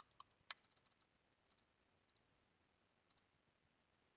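Near silence with a scattering of faint, sharp computer clicks: a quick cluster in the first second, then single clicks at wider intervals.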